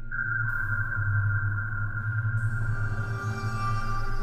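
Eerie horror-style background music: a steady low drone with a sustained high tone that enters at the start, and a second tone joining about half a second in.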